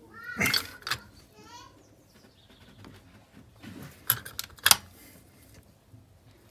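Sharp metallic clicks and clinks of a ratchet, socket and extension on the engine, the loudest two about four and five seconds in. Near the start there is a short high-pitched wavy cry, twice.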